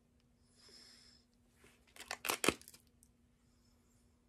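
Plastic clamshell wax-tart package being pried open: a soft rustle, then a quick run of sharp plastic cracks and clicks about two seconds in, the last one the loudest.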